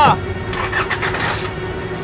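A car engine with a burst of noise lasting about a second, over background music holding one steady note.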